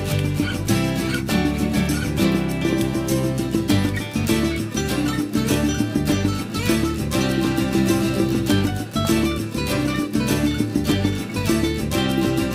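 Background music: an upbeat track led by plucked guitar with a steady beat.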